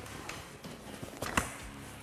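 Roll-out awning being pulled out from its cover: faint handling noise and one sharp knock a little past halfway, over quiet background music.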